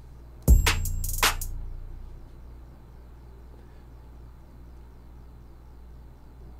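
Drum-machine samples played from Maschine: a deep kick about half a second in, a few short high ticks, then a second, brighter hit just over a second in, the low end dying away within about a second.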